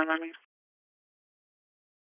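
The last word of a two-way police radio transmission, a thin radio voice that cuts off abruptly about half a second in, followed by dead silence on the channel.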